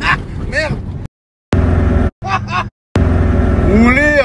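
Car engine and road rumble heard from inside the cabin while driving, with a voice calling out over it. The sound breaks off into brief silences three times.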